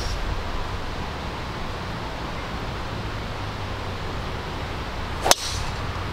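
A golf driver strikes a ball off the tee: one sharp, very short crack near the end, over a steady low outdoor background.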